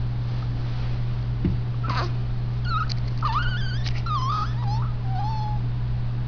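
A few short, high, squeaky whimpering calls that bend up and down in pitch, starting about two seconds in and fading out near the end, over a steady low hum.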